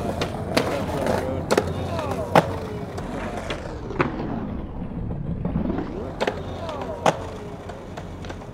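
Skateboard wheels rolling on concrete, with several sharp clacks as the board pops and lands. The board also scrapes along a concrete ledge.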